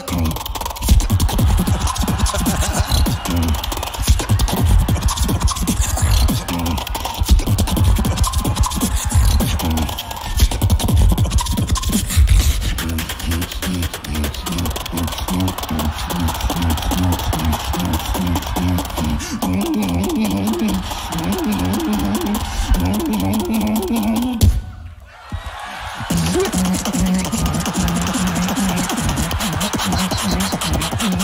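Competition beatboxing through a handheld stage microphone: deep kick-drum hits and vocal snares, with a pitched bass line in the second half. It drops out briefly near the end, then resumes.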